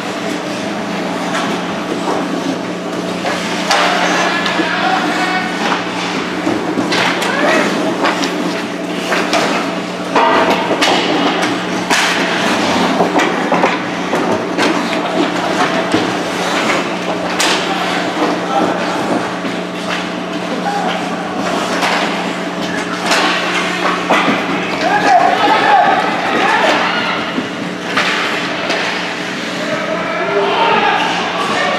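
Youth ice hockey game in an indoor rink: repeated sharp knocks and thuds of sticks, puck and players hitting the boards, over spectators' voices calling out and a steady low hum.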